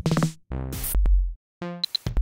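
Glitchy electronic beat from a live-coded TidalCycles pattern playing SuperDirt drum-machine and synth samples: short pitched synth notes, then a deep bass thump about halfway through, in a stop-start rhythm broken by brief gaps.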